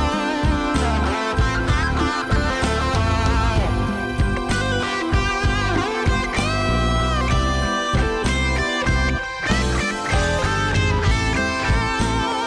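Instrumental break of a song: a guitar plays the lead melody, its notes bending and wavering in pitch, over a backing band.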